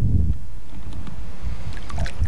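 Wind buffeting the camcorder's microphone: a loud, steady low rumble, with a few light clicks near the end.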